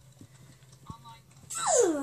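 A short, high vocal cry about one and a half seconds in, sliding steeply down in pitch, after a few faint clicks.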